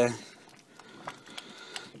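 Faint bubbling and spoon-stirring of a thick corn mash boiling in a steel pan, with a few small ticks near the middle; one spoken word at the very start.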